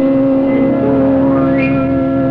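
Jazz quintet of trumpet, tenor saxophone, piano, bass and drums, the horns holding long notes together.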